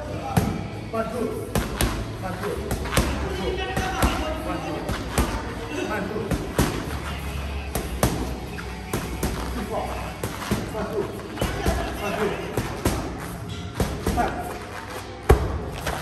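Boxing gloves smacking against focus mitts in a run of punches, sharp irregular hits about one or two a second, the loudest near the end.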